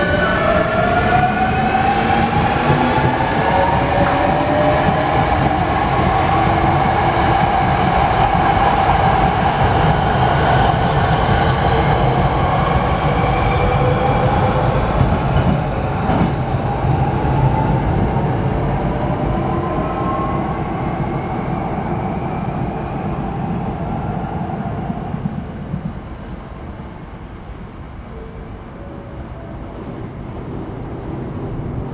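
Hankyu electric train pulling out of the station. Its motor whine rises in pitch as it accelerates over a steady rumble of wheels on rail, then fades away over the last few seconds as the train leaves.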